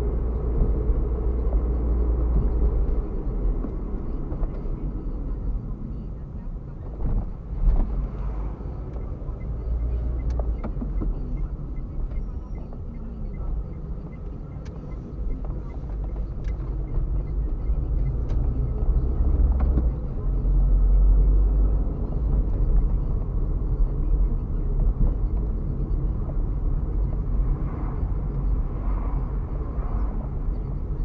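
Inside a moving car: a steady low rumble of engine and tyres on the road that swells and eases with speed, loudest about two-thirds of the way through. A couple of brief knocks come about seven to eight seconds in.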